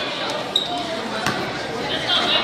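A basketball bouncing twice on a gym floor, the thuds echoing in the hall over a steady murmur of crowd voices.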